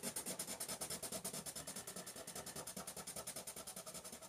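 Koh-i-Noor colourless blender pencil rubbed back and forth over a layer of coloured pencil on paper, a faint scratching in quick, even strokes, burnishing and merging the pigment.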